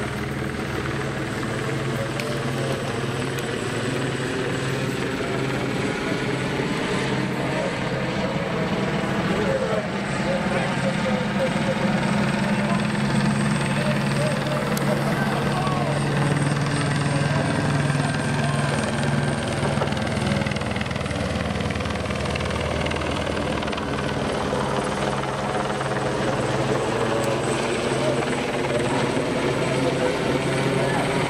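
Helicopter circling overhead: a steady low rotor drone with slowly gliding higher tones above it, a little louder from about twelve seconds in.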